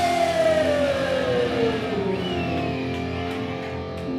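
Electric guitars of a live punk band ringing out at the end of a song, one strong note sliding slowly down in pitch over about two seconds above steady held tones.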